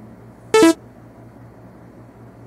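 A short synthesized sound effect about half a second in: a bright two-note blip that steps down in pitch, lasting about a fifth of a second, over a faint steady low hum.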